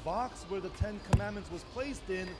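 A man speaking into a podium microphone in a language the transcript does not catch, with a sharp knock a little over a second in and a softer thump just before it.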